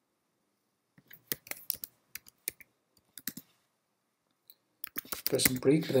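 Typing on a computer keyboard: irregular keystroke clicks, a run of them from about a second in and a few more shortly before the end.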